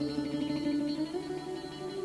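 Live rock band playing an instrumental passage between sung lines: picked guitar notes over steady held chords.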